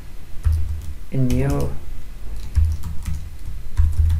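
Typing on a computer keyboard: an uneven run of key clicks, with a short spoken word about a second in.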